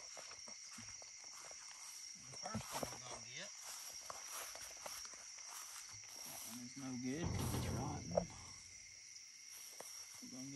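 Steady high-pitched chorus of insects in garden vegetation. Under it are faint low voices and rustling, which are loudest about seven seconds in.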